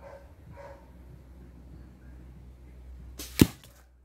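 An arrow striking a plastic water bottle cap set on a stick: one sharp crack about three-quarters of the way in, followed by a brief rattle, a clean hit that knocks the cap off.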